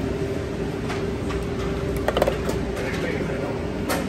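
Busy restaurant background noise with a steady hum running through it. About two seconds in, a few sharp clicks of plastic serving tongs against steel food pans.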